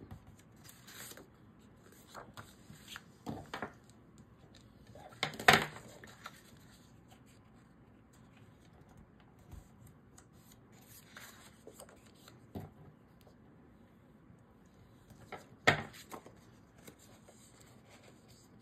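Hands scoring and folding a small piece of cardstock to form a narrow gusset: soft paper scrapes and rustles, with two sharp taps about five and sixteen seconds in.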